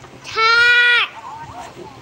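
Speech: a single drawn-out, high sing-song "ciao", held for under a second.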